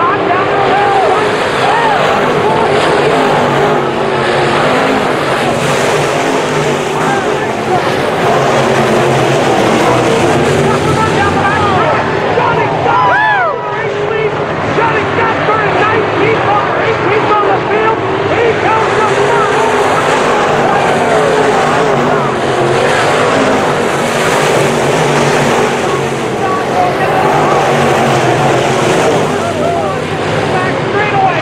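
A pack of dirt-track modified race cars running flat out around the oval in a loud, continuous din of many engines, their pitches rising and falling as the cars go by. One car's engine note rises and falls sharply about 13 seconds in.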